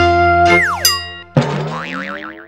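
Short synth logo jingle with cartoon sound effects: a held chord, then several falling whistle-like glides about half a second in, and a new struck chord near the end with a wobbling, warbling tone over it.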